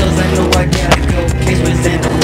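Skateboard wheels rolling on concrete, heard over a hip hop track with a steady bass line.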